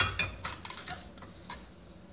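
Several short clicks and clinks of glass and plastic over about a second and a half, the first the loudest, as the top glass beaker of a Bodum Pebo vacuum coffee maker is worked loose from the lower pot's collar.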